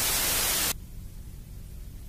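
Analog television static: a loud hiss of white noise that cuts off suddenly less than a second in, leaving a low hum.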